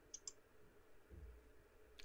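Near silence, broken by two faint quick clicks about a quarter second in and a soft low thump just past a second in.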